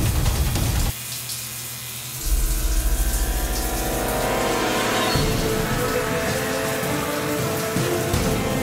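Background music: it thins out about a second in, a heavy bass comes in a little after two seconds, and it builds up and changes again around five seconds.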